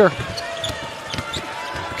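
A basketball dribbled on a hardwood court: a run of short, low bounces.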